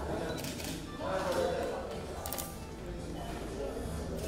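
Indistinct voices talking in the background over faint music, with a few short sharp clicks.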